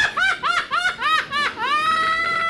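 A man laughing hard in a high pitch: a quick run of ha-ha pulses, about four a second, then one long high note held from near the end.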